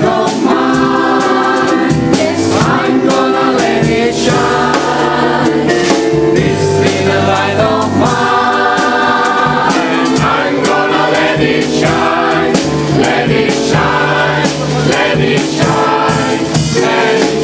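Mixed gospel choir singing in full harmony, with steady hand claps keeping the beat.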